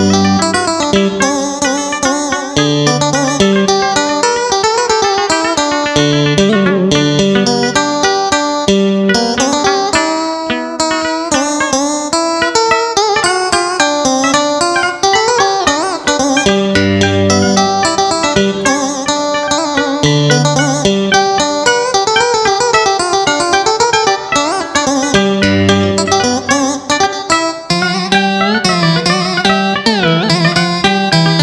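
Instrumental duet in Vietnamese traditional style: a Roland E-A7 arranger keyboard plays a traditional-instrument melody over a stepping bass line, with a small round-bodied plucked lute. The melody is full of bent, sliding notes.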